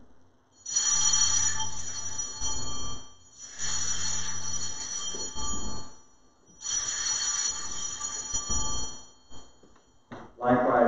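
Altar bell rung three times, each ring sounding for about two seconds and fading, marking the elevation of the consecrated bread after the words of institution.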